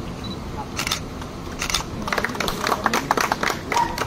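Camera shutters clicking in quick, irregular runs: a short burst about a second in, then dense clicking from about two seconds on, over low background voices.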